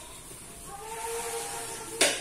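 Peyek (Indonesian peanut crackers) deep-frying in a wok of hot oil, with a steady sizzling hiss.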